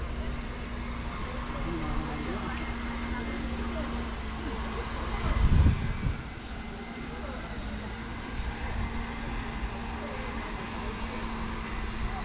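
Open-air ambience with faint voices of other people and a steady low hum. A brief low rumble on the microphone swells about five and a half seconds in.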